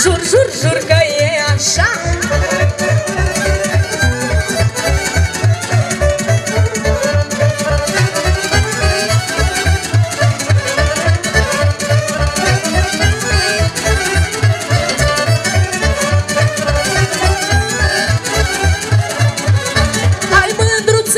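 Romanian folk band playing an instrumental passage: accordion and violin carry the melody over an even, driving bass beat.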